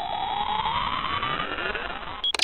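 Electronic loading-bar sound effect: a synthetic tone sweeping steadily upward in pitch over a grainy hiss, fading out near the end.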